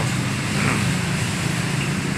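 Steady low rumble of road traffic or an idling vehicle engine.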